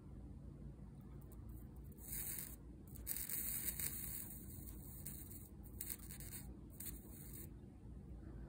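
Faint sizzling hiss from a soldering iron melting solder and flux onto the pads of a small SO8-to-DIP8 adapter board, coming in a few short spells.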